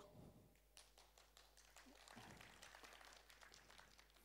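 Near silence with faint, scattered clapping from a few people in the audience.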